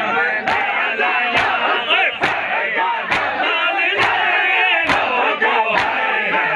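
Crowd of men doing matam, beating their chests in unison: sharp slaps at a steady beat, about one a second, seven in all, over many men's voices shouting and chanting together.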